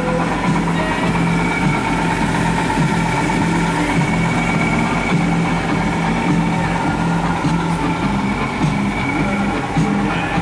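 Bus engine idling, a steady hum with a low, even pulse underneath, heard from inside the bus.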